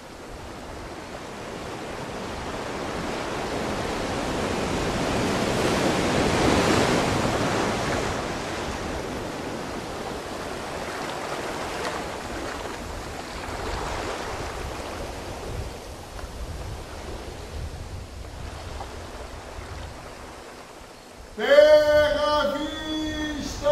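Sea waves washing in and drawing back, probably a stage sound effect: one big swell building to a peak about six seconds in and ebbing, then smaller swells. A man's voice starts right at the end.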